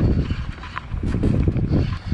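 Wind buffeting an action-camera microphone over choppy sea, with small clicks and knocks while a spinning reel is cranked against a hooked fish on a bent rod.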